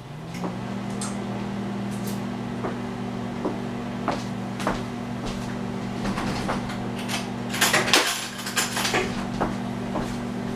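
A microwave oven switches on and runs with a steady hum, which rises briefly in pitch as it starts and then holds level. Light clicks and knocks sound over it now and then, several close together near the end.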